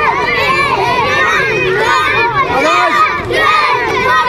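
A large group of children shouting and yelling at once, many high voices overlapping in a steady din.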